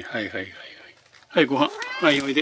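A cat meowing. The tail of one meow comes at the start, and two drawn-out meows follow close together near the end.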